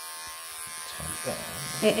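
Electric pet clippers running with a steady buzzing hum as they cut through a tightly matted pelt close to a Persian cat's skin.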